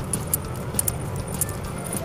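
Metal coins clinking together as they are picked up and counted by hand: a handful of short, sharp clinks at irregular moments.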